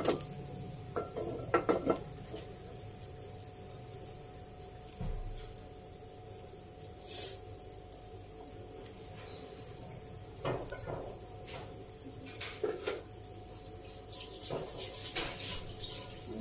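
Scattered clinks and knocks of cookware and utensils, several near the start and more toward the end, over a steady faint hum, while oil warms in a frying pan without sizzling.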